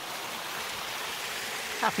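Steady rush of running water, like a creek flowing over rocks, with a man starting to speak near the end.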